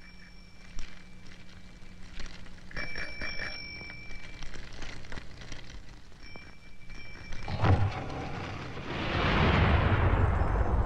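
Trailer sound effects: a low steady hum with several short, high ringing tones like a bell. About seven and a half seconds in, a rushing noise swells into a loud, explosion-like roar.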